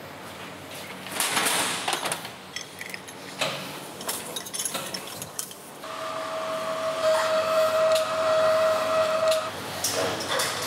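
Irregular metal knocks and clatter in an abattoir stunning pen, then a steady high-pitched electronic tone from the pig stunning equipment. The tone comes in about six seconds in, lasts about three and a half seconds and cuts off abruptly.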